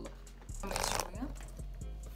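A brief crackling rustle of handling noise, about half a second long and starting about half a second in, over a steady low hum.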